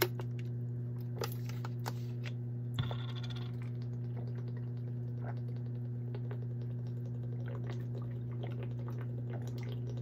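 A plastic water bottle being handled and drunk from: a few sharp clicks and crinkles as it is raised, then a run of small faint clicks of swallowing and plastic crackling as the water goes down, over a steady low hum.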